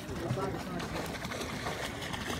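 Faint voices in the background over a steady rush of outdoor noise, with no distinct splash standing out.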